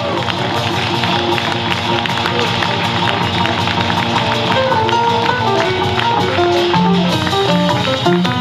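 Live small-group jazz blues played by piano, upright double bass and drum kit, with steady cymbal strokes and a bass line moving underneath the piano.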